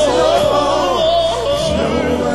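Male vocal group singing an R&B ballad live into microphones, a lead voice sliding and wavering through a vocal run over sustained low accompaniment.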